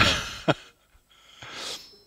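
A man laughing breathily into a headset microphone: a burst of breath at the start, a short sharp one about half a second in, then a softer breath near the end.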